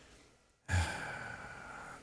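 A man's long sigh, starting abruptly about a third of the way in and fading slowly, after a brief silence.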